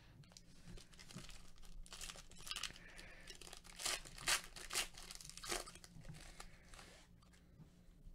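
Foil wrapper of a baseball card pack being torn open and crinkled: a run of short rips, the loudest about halfway through.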